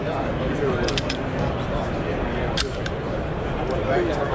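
Steady crowd babble of a busy exhibition hall, with a few sharp clicks from a Steyr L9-A2 pistol being handled: three close together about a second in, then single clicks later.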